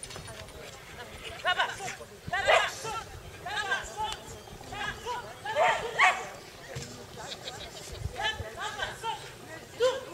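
A handler's short shouted commands, about one a second, directing a dog round an agility course.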